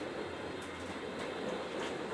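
Running noise inside a Roslagsbanan electric commuter train carriage under way: a steady rumble of wheels on rail, with a few light clicks.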